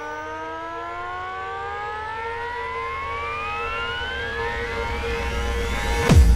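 Hardstyle track build-up: the kick drum drops out and a synth sweep rises steadily in pitch for about six seconds over a held note, with a low rumble growing louder, until the heavy kick drums crash back in right at the end.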